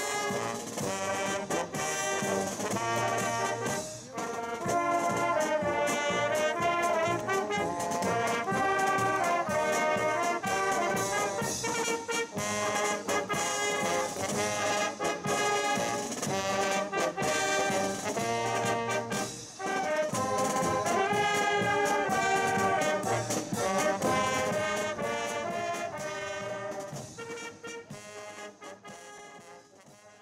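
Brass band music playing a melody, fading out over the last few seconds.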